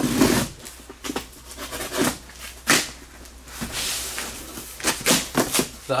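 Cardboard box being opened by hand: the flaps and packing scrape and rustle on and off, with a sharper knock about midway.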